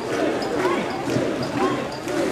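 Festival crowd around a portable shrine: many voices shouting and calling at once, overlapping into a continuous din.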